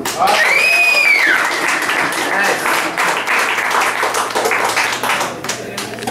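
Small audience clapping and cheering at the end of a song, with a high cheer that rises and falls about a second in.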